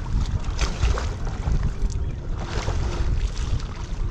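Wind buffeting the microphone in a fluctuating low rumble, with lake water lapping and a few brief splashes around a capsized kayak and the side of an inflatable raft.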